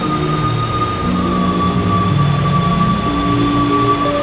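Rushing whitewater of river rapids pouring over a rock ledge, a steady, loud noise, with background music of slow, held notes over it.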